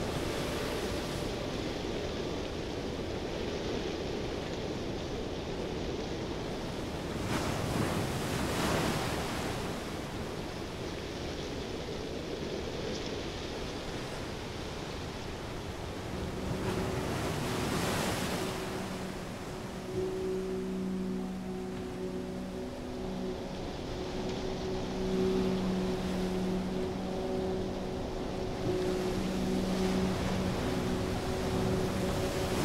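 Synthetic airship ambience: a steady rush of wind that swells into gusts twice, around 8 and 18 seconds in. From about halfway through, a low steady humming tone joins the wind and breaks off briefly now and then.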